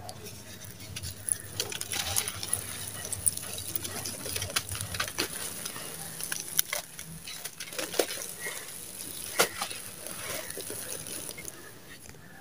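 Dry, crumbly sand-cement lumps crushed and broken apart by hand: irregular gritty crunching and crackling with a few sharper cracks, and loose grit pattering down.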